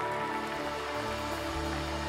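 Soft, steady instrumental worship music from the band: held keyboard chords over a low bass note that shifts about a second in.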